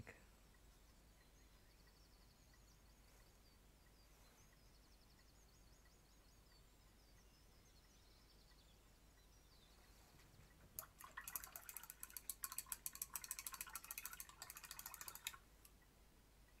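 Near silence for the first two-thirds, then a paintbrush being swished and knocked about in a pot of rinse water: a fast, dense run of clicks and splashy rattles lasting about four seconds, stopping shortly before the end.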